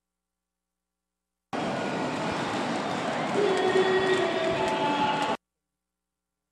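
Steady crowd noise in a packed basketball arena, with a few faint held tones rising out of it in the middle. The sound cuts to dead silence for the first second and a half and again near the end.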